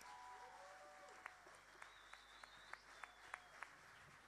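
Near silence in the hall after the music ends, broken by about eight faint, sharp, irregular hand claps from a few audience members, starting about a second in.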